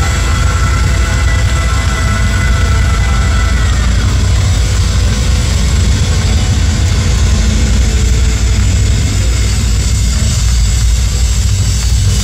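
Live progressive metal band playing loud, with distorted guitars, bass and drums. A heavy bass rumble dominates the sound, and a held high note bends down about four seconds in.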